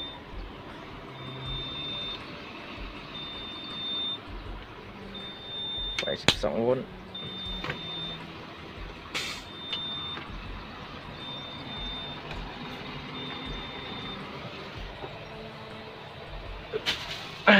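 Scania P410 truck cab's door-open warning chime: a high beep, each a little under a second long, repeating about every two seconds and stopping about two seconds before the end. It sounds because the dash display reports a door not closed.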